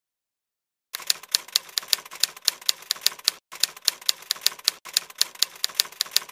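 Typewriter key strikes used as a sound effect, clicking at about four a second from about a second in, with two brief breaks in the run.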